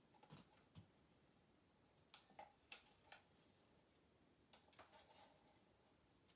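Near silence with a few faint clicks and scrapes of a wooden stir stick against plastic cups as acrylic paint is poured and scraped from one cup into another.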